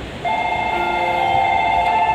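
Station platform electronic departure bell ringing: a loud, fast-fluttering electronic tone of several steady pitches that starts about a quarter second in and holds steady, signalling that a train is about to depart.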